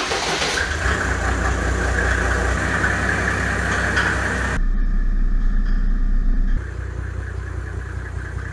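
Mercedes OM606 straight-six turbodiesel, with a mechanical injection pump and a Holset HX35 turbo, swapped into a G-Wagon, idling steadily just after starting. The sound changes abruptly twice, about halfway through and again later.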